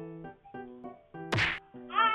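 Background music with one sharp whack about one and a half seconds in, marking a baby's hard kick to a mother's belly.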